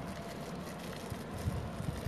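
Steady outdoor background noise between remarks, with a few low bumps of wind on the microphone in the second half.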